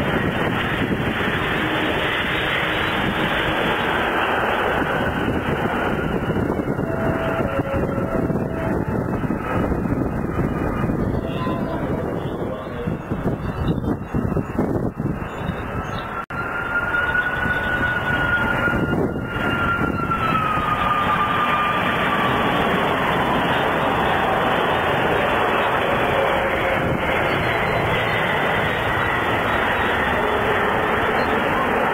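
Jet airliners landing. A Boeing 777's engines roar steadily as it touches down, and after a brief quieter dip a Boeing 747-400 freighter's engines come in, with a high whine falling slowly in pitch over about ten seconds under a steady roar as it approaches and lands.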